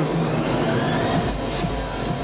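Steady indoor arena ambience: a constant low hum under a wash of background noise, with faint music.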